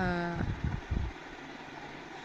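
A woman's voice holds a drawn-out syllable for about half a second, then breaks off into a pause filled by a few low rumbling thumps and a steady background hum.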